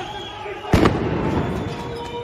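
A single loud bang about three-quarters of a second in, with a short ringing tail, over street noise and voices.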